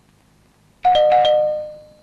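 Doorbell chime rings once, a quick run of several bell-like tones about a second in that fades away over the next second.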